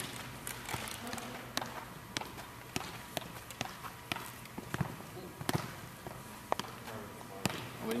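A football being juggled on the feet and body: irregular sharp taps of the ball, roughly one or two touches a second.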